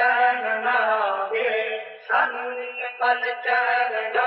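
Male solo voice singing a drawn-out, ornamented melody on an open 'aa' vowel with no instruments: an isolated studio vocal track. The line breaks off briefly about halfway through, then goes on.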